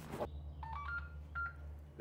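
Short electronic beeps from a handheld device: a quick run of notes stepping up in pitch, then two more beeps at one pitch.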